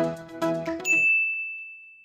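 Background music that stops about a second in, just as a single high ding sound effect, a notification-bell chime, starts and rings on, slowly fading.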